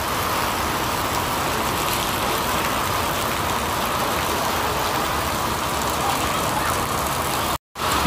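Heavy rain falling steadily, an even hiss that breaks off for a moment near the end.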